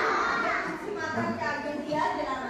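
A group of young children's voices talking and calling out over one another, with the echo of a hall.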